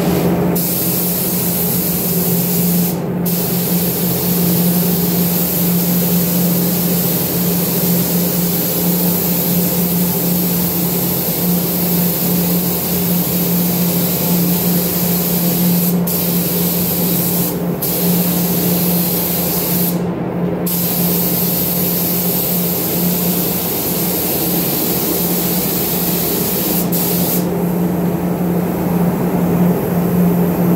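Gravity-feed paint spray gun hissing as it sprays primer, the hiss breaking off briefly a few times as the trigger is let go and stopping near the end. A steady low hum runs underneath.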